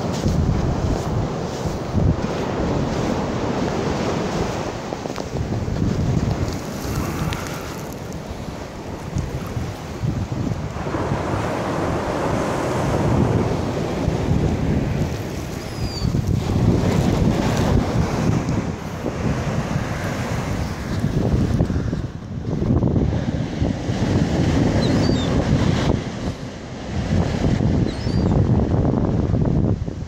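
Small surf washing up the beach, with wind buffeting the microphone; the noise swells and eases every few seconds.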